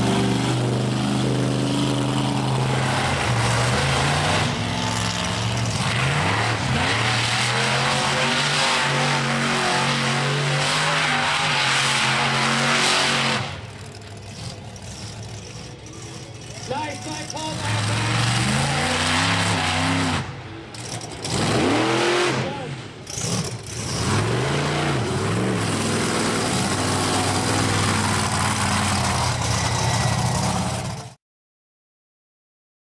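Monster truck engines running loud at high revs. After a quieter stretch near the middle, a truck's engine revs up and down several times, then runs loud and steady to the end.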